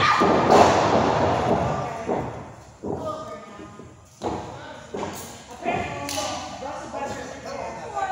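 Bodies hitting a wrestling ring's canvas: a loud, noisy crash over the first two seconds, then several sharper thuds on the ring boards, among shouting voices.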